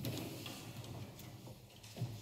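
Faint concert-hall room noise: a low steady hum with scattered light clicks and taps.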